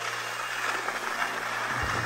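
A steady low mechanical hum, the drive machinery of a detachable six-seat chairlift station, under a faint hiss of outdoor background noise.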